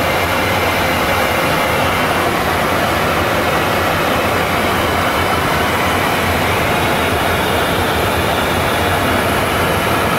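Steady cockpit noise of a Yakovlev Yak-40 in level cruise: a constant rush of airflow over the nose and windscreen blended with the hum of its three rear-mounted turbofan engines, unchanging in level.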